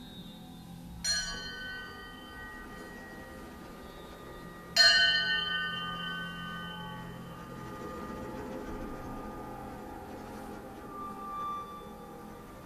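A small metal percussion object struck twice, about a second in and again near five seconds, the second strike louder; each rings out with many high, bell-like overtones that fade over a few seconds. A low sustained drone runs underneath, with a higher tone swelling near the end.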